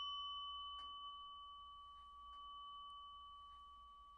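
A single bell-like chime note ringing out and slowly fading: the last note of the background music.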